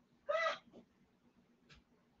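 A single short, high-pitched vocal call about a third of a second in, then a faint click near the end.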